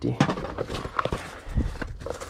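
Rummaging in a nylon duffel bag: fabric rustling and scattered small knocks and clicks as objects inside are shifted and a small cardboard box is pulled out.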